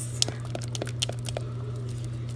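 Silicone spatula stirring thick, hot candy syrup in a metal pot, with scattered soft clicks and scrapes against the pot over a steady low hum.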